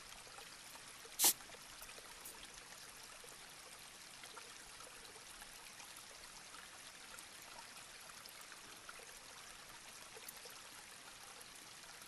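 Faint steady hiss of room tone, with one sharp click about a second in and a couple of tiny ticks near the end.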